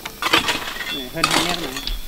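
Metal hoe scraping through loose broken rock and gravel, with stones clinking and knocking against each other.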